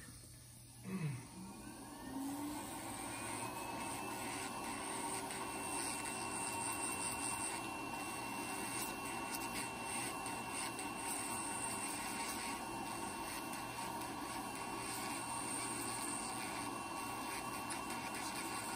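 Electric podiatry nail drill spinning up about a second in, with a rising whine, then running steadily as its burr grinds down a thickened, layered big toenail.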